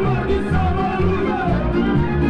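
Lively Romanian folk dance music with fiddle and a steady beat, played for masked dancers.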